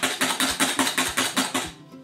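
Ball-tipped wire whisk beating egg and water in a glass bowl, its tines clicking against the glass in fast, even strokes about seven a second, stopping shortly before the end.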